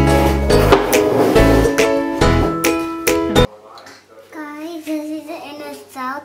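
Upbeat background music with plucked strings and a steady beat, cutting off abruptly about three and a half seconds in. A child's voice then follows, quieter, in a few wavering sung notes.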